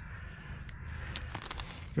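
Faint crinkling and rustling of a Maurten energy-gel sachet being squeezed into a tight shorts pocket, with a few small sharp clicks, over a steady low rumble.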